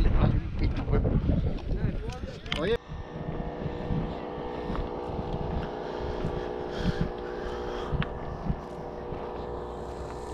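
Wind rumble on the microphone with muffled voices, then an abrupt change about three seconds in to a steady engine drone that holds several fixed tones, with a few faint clicks.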